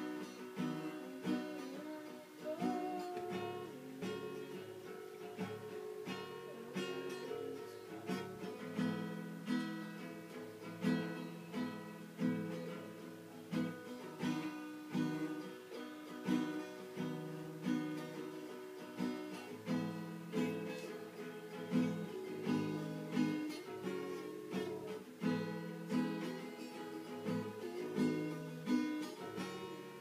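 Acoustic guitar strummed in a steady rhythm, with the chords changing every second or two.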